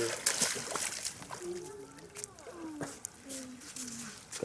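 Water splashing briefly as someone wades out of shallow river water near the start, followed by a person talking.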